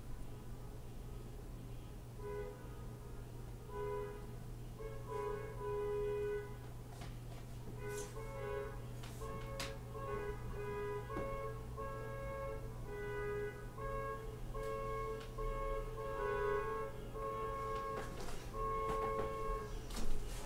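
Music from a parade passing in the street, heard from indoors: a melody of held notes that begins about two seconds in.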